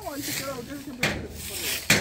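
Quiet, indistinct talking, with a short sharp tap about a second in and a louder one near the end.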